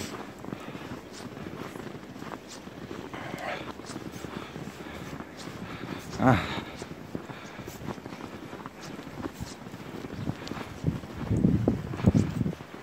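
Footsteps crunching through fresh snow, a steady irregular run of soft crackles from people and dogs walking. A brief vocal "a" comes about six seconds in.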